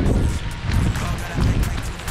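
Wind buffeting a handheld camera's microphone during a run, a steady low rumble, with footfalls on wet pavement.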